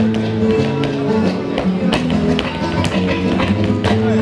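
Flamenco guajira music with Spanish guitar, over which a dancer's shoes strike the stage in sharp, irregular taps.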